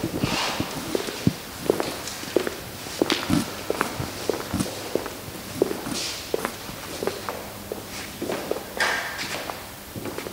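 Irregular footsteps and small knocks, with a few brief paper-like rustles, as a document is handled and signed at a table.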